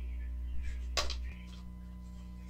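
Electrical mains hum with a single sharp click about a second in, after which the hum drops back: a power plug being handled at a surge protector.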